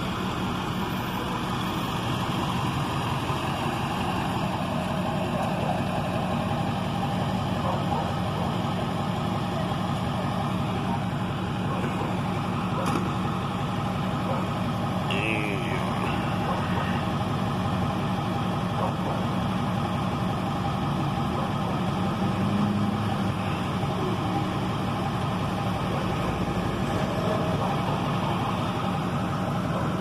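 A tow truck's engine idling steadily.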